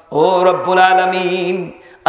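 A man's voice intoning one long melodic phrase in the chanted style of a Bangla waz sermon, held on a steady pitch and fading out near the end.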